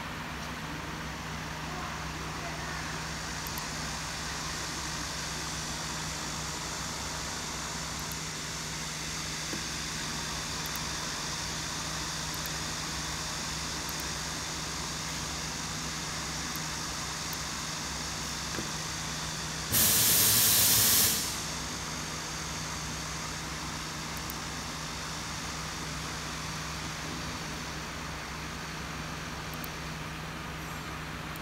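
Steady room hum and noise of a laser-cutting workshop. About twenty seconds in, a loud hiss of rushing air or gas lasts about a second and a half and cuts off suddenly.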